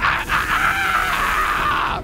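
A cartoon hot dog character's long, raspy scream of pain as he is roasted over the flames. It holds without a break and cuts off near the end.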